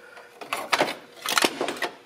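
A Notifier fire alarm pull station being picked up and pulled off a crowded shelf of alarm devices, knocking and rattling against them. The knocks come in two clusters, one about three quarters of a second in and a louder one around a second and a half.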